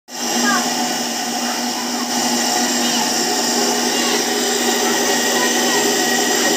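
Electric mixer grinder's motor running steadily at speed, a loud even whir with a constant low hum.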